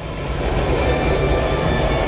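Steady background noise of a large sports hall: an even noise with a strong low rumble and no distinct event standing out.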